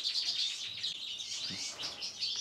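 Small birds chirping and twittering continuously, with many quick, high-pitched notes overlapping.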